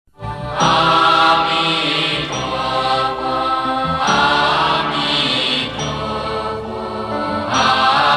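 Buddhist devotional chant sung to music, voices holding long notes in slow phrases.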